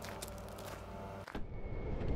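Steady low mechanical hum in a carwash bay that cuts off abruptly a little over a second in. A few faint knocks follow as someone moves at an open car door.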